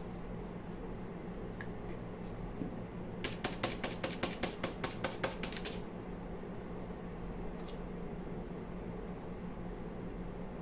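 Flat paintbrush brushing wax patina onto a raised, textured surface in a quick run of short strokes, about six a second for a couple of seconds partway through, over a faint steady hum.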